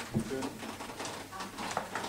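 A handheld microphone bumped while being handled, giving a low thump, followed by a short low murmured 'hm' and faint fragments of voices.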